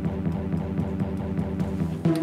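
Music played back on an Akai MPC X: a sustained low chord of layered tones with faint, evenly spaced ticks above it.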